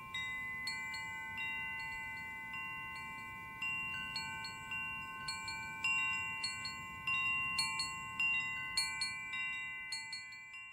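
Wind chimes ringing: metal chimes struck at irregular intervals, about every half second to second and more often in the second half. Each note rings on and overlaps the others in a cluster of high tones.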